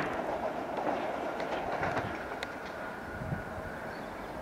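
London Underground 1996 stock tube train running on open track: a steady wheel-on-rail rumble with scattered clicks as the wheels pass over rail joints, easing slightly in level toward the end.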